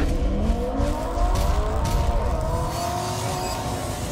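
Car engine revving as a sound effect. Its pitch climbs quickly over the first second or so, then holds at high revs and slowly fades.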